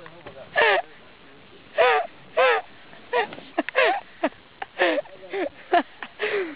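A person laughing hard in about ten short, high-pitched bursts.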